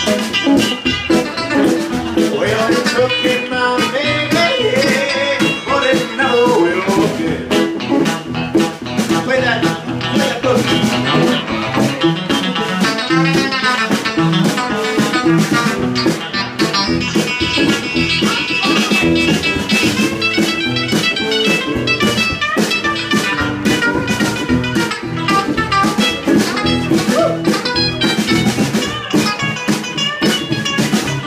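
Live rockabilly band in an instrumental break: an electric guitar plays lead lines with string bends over a strummed acoustic guitar and a steady snare drum beat.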